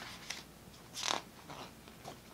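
A page of a large glossy booklet turned by hand: a short paper swish about a second in, with a lighter tick before it and a soft rustle after.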